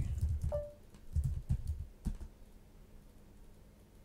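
Computer keyboard typing: a quick run of keystrokes over the first two seconds as a terminal command is typed in.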